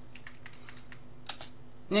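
Typing on a computer keyboard: a run of light key clicks while a line of text is corrected and a new line started, with a couple of sharper keystrokes just over a second in. A faint steady hum lies underneath.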